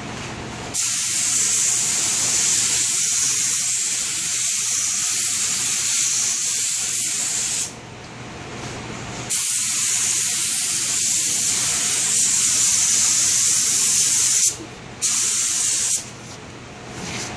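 Compressed-air cup spray gun spraying finish onto wood, a loud steady hiss on each trigger pull: one long burst of about seven seconds, a short pause, a second burst of about five seconds, then a brief break and another burst near the end.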